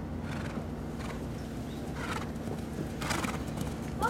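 A 12-year-old Thoroughbred-cross gelding cantering on a sand arena: hoofbeats, with a few short breathy bursts of noise over a steady low hum.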